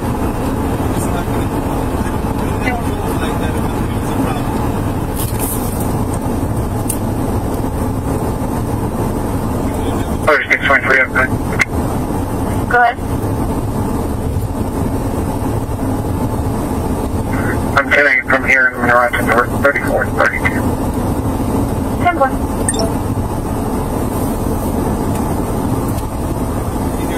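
Steady road and engine noise inside a moving Ford patrol car's cabin, with short bursts of voices twice, about ten seconds in and again near twenty seconds.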